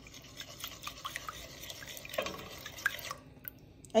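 A metal spoon stirring and tapping in a pot of watery broth, making soft liquid sloshes and many small, light clicks against the pot.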